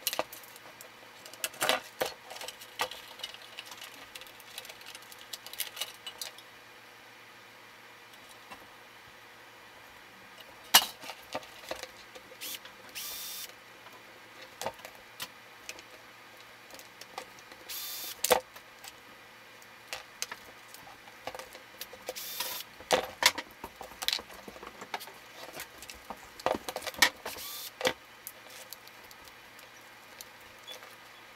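Plastic and metal parts of a Brother WP-95 word processor's printer mechanism being handled and pulled apart. Irregular clicks, knocks and rattles sound throughout, with a few short scrapes.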